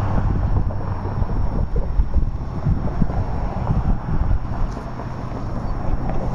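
Wind buffeting the microphone in irregular gusts, over a steady low hum.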